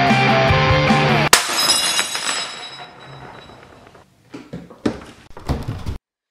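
Background music stops abruptly about a second in as a ceramic heart ornament smashes, the shards ringing and clattering as they settle and fading away. A few faint knocks follow near the end.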